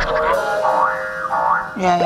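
Voices in a TV studio over background music, with a wobbling, pitch-bending sound that may be a comic sound effect.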